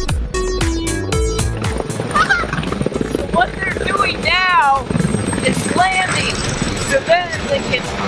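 Electronic music with a drum beat that stops about two seconds in, followed by a man's voice sweeping up and down in pitch over a steady, noisy background.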